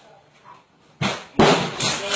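A door being forced open: after a quiet moment, a sudden loud bang about a second in, then a sharper crash and continued loud banging.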